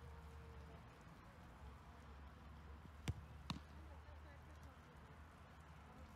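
Two sharp thumps of a football being struck, about half a second apart, the first louder, over a low steady hum.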